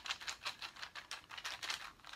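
Cardboard monster tokens clicking and shuffling against each other as a hand rummages in a crocheted draw bag: a fast, faint run of small clicks.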